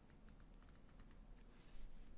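Faint taps and clicks of a stylus on a tablet screen, with a short scratchy stroke near the end as a line is drawn.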